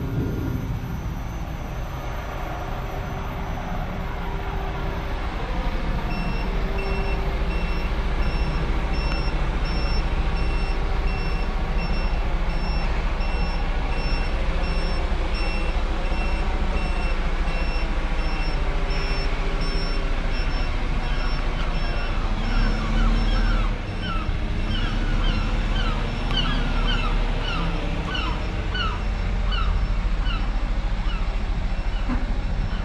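Vehicle reversing alarm beeping at a steady rate, a bit over once a second, starting about six seconds in, over a steady low rumble.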